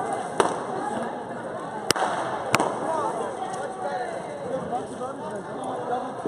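Latex balloons being popped: three sharp pops, a faint one about half a second in, then two louder ones about two seconds in, over background chatter.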